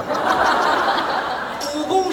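Live audience laughing, a burst that swells at the start and fades after about a second and a half, when a man's voice comes in.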